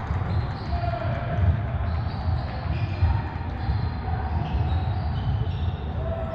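Indoor soccer in a large echoing sports hall: a steady low rumble of the hall, with ball kicks thudding, the sharpest about one and a half seconds in and another about three seconds in.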